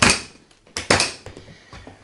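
Latches of a Samsonite hard-shell rolling case snapping open: one sharp click at the start and a quick double click just under a second in.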